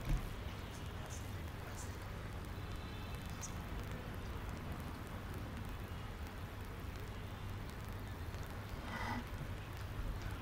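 Steady low hum and hiss of open-air stadium ambience picked up by the field microphones, with a faint click at the start and a brief faint distant voice about nine seconds in.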